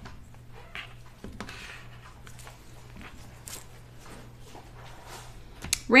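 Rotary cutter rolling through rayon on a cutting mat in short strokes, with faint clicks and rustling as the fabric and paper pattern are handled, over a steady low hum.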